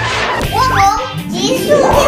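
A child's voice calling out over background music, with gliding cartoon sound effects.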